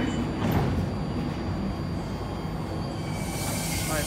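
BART Fleet of the Future subway train standing at an underground platform with a steady low rumble. Near the end a steady high whine and hiss come up as its propulsion starts for departure.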